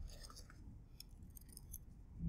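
Faint crinkling and small ticks of a folded paper slip being opened by hand.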